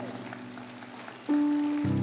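Soft music of held keyboard chords. A new steady note comes in past the middle, and a deep low chord swells in near the end.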